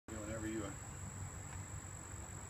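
Crickets trilling in one steady high-pitched note, with a brief voice sound just after the start and a low rumble underneath.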